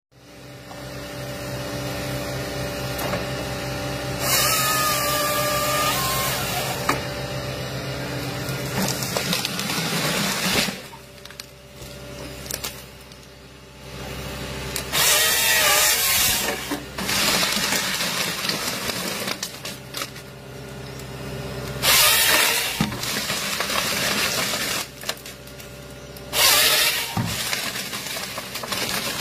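Tracked excavator-based forestry harvester running steadily, its diesel engine and hydraulics droning, with several loud bursts of a second or two as the harvester head saws, feeds and delimbs tree stems.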